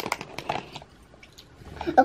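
A few light rustles and clicks as a hand rummages in a cardboard snack box, then a short vocal sound from the child near the end.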